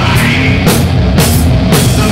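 Sludge metal band playing: heavy distorted guitar and bass under drums that strike about twice a second.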